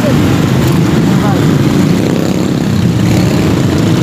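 Steady low rumble of a running motor-vehicle engine, with wind noise on the microphone.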